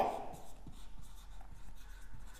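Whiteboard marker writing on a whiteboard: faint, irregular scratching strokes as letters are written.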